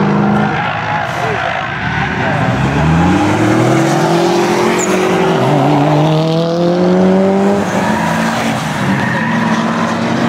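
Subaru Impreza's turbocharged flat-four engine driven hard on a track. The engine note falls away about half a second in as the car slows for a corner, then revs up with gear changes about five and a half and eight seconds in.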